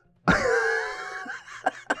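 A man laughing hard. One long high laugh starts just after the beginning and trails off. Near the end it breaks into a quick run of short breathy huffs of laughter.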